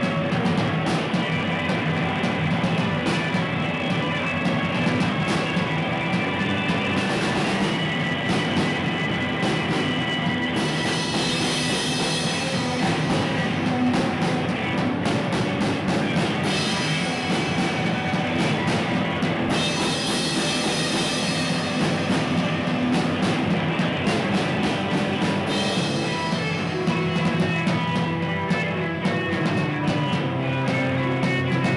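Live rock band playing loud on a drum kit and electric guitars, with the cymbals washing heavily through two long stretches in the middle.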